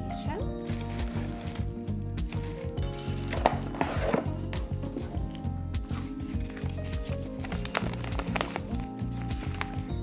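Background music with held notes and a moving bass line, over light rustling of tissue paper and cardboard packaging and small knocks as a box is unpacked.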